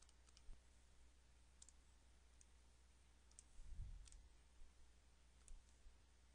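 Near silence: a faint low hum with about eight faint, irregular clicks scattered through, and a soft low thump a little before the fourth second.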